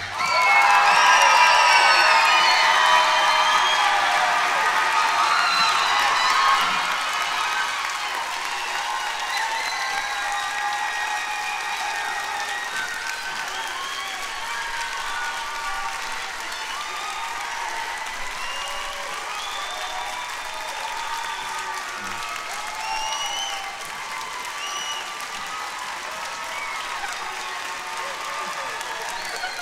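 Audience applauding and cheering, with scattered shouts and whoops, starting as the music cuts off. It is loudest over the first several seconds, then slowly dies down to steadier clapping.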